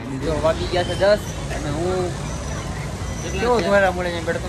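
Men talking over a steady low rumble of street traffic.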